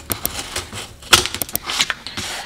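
Utility knife cutting and prying bubbled laminate off a countertop, the brittle laminate cracking and snapping off in a series of sharp clicks, the loudest just after a second in.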